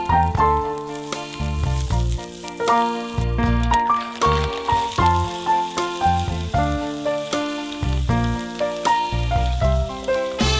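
Background music with a steady beat, over the faint sizzling of garlic and green onion frying in oil in a pan.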